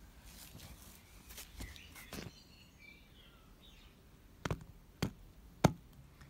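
A few light knocks over faint outdoor background noise, ending in three sharper taps about half a second apart, the last the loudest: a hard plastic toy horse figure being walked along paving.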